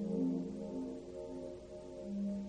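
1950s tape-recorder music: several sustained low tones overlap and shift in pitch, with a hum of resonant, bell- or horn-like sound.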